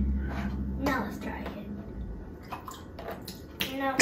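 Water poured from a glass into a funnel, running through the tubes of a homemade digestive-system model and splashing into a plastic tub on the floor.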